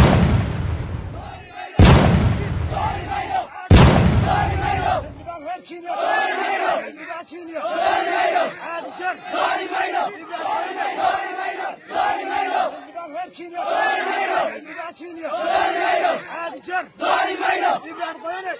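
Three heavy booms about two seconds apart, each dying away slowly, then a large crowd of protesters chanting in repeated rhythmic phrases about once a second.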